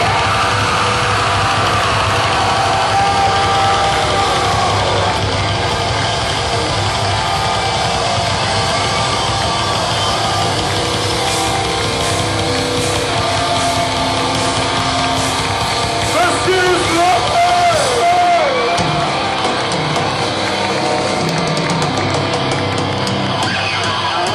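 Heavy metal band playing live at full volume, recorded from inside the crowd.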